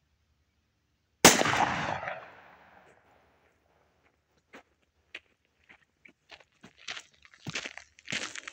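A single shot from a Ruger Security-Six revolver, a sharp crack about a second in that dies away over about a second and a half. A few faint scattered clicks and crunches follow near the end.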